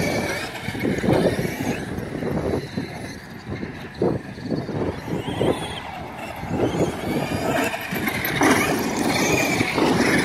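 Two electric RC monster trucks, a Traxxas X-Maxx among them, driving hard on a dirt track: the motors whine up and down in pitch with the throttle, over a rough hiss of tyres churning dirt, and the whine is most prominent near the end.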